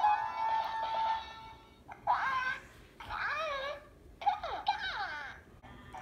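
A short electronic tune fades out in the first two seconds. Then come three bursts of high-pitched, warbling baby-like chatter from a Hatchimals Penguala toy as it is being hatched.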